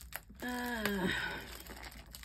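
Hands working crinkly packaging shut, with a few light clicks, and a short, slightly falling 'uh' voiced about half a second in.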